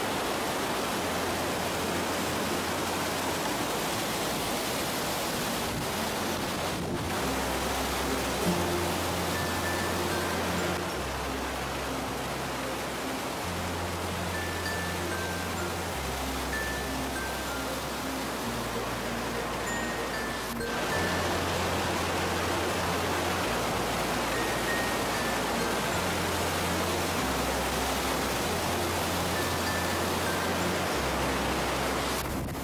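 Rushing whitewater of river rapids under background music: a bass line of held notes stepping every few seconds and a light melody of short, high, bell-like notes. The water sound dips briefly twice where the footage cuts.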